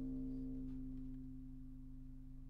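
Final chord of a song strummed on a guitbass, ringing out and fading slowly, the high notes dying away first.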